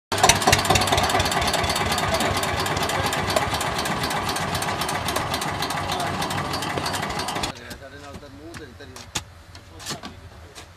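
Farm tractor's diesel engine running with a dense, rapid knock, cutting off abruptly about seven and a half seconds in. After that only faint voices and a few sharp clicks remain.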